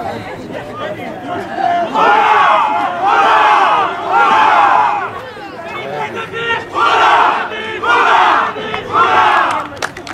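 A group of rugby players arm in arm shouting a team cheer in unison: three loud shouts about a second apart a couple of seconds in, a short lull, then three more near the end.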